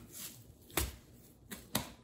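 Plastic cling film crinkling and crackling as it is rolled and twisted tight around a log of meat, with three short, sharp crackles in the second half.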